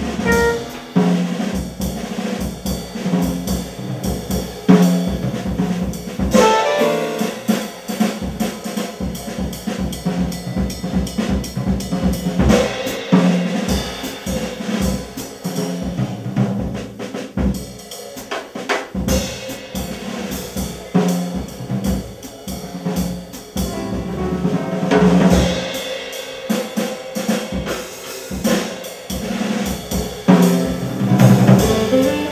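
Live small-group jazz: a drum kit playing busily throughout, with upright bass, piano and saxophone.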